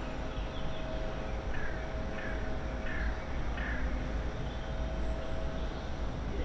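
A bird calling four times in a row, short falling calls about two-thirds of a second apart, over steady outdoor background noise.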